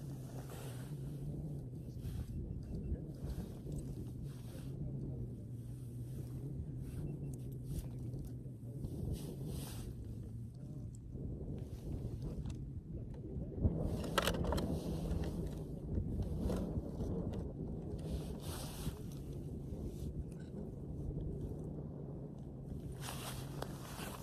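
Clothing rustling and gear scraping in irregular short bursts as hands work a tip-up and line at an ice-fishing hole, over a steady low hum.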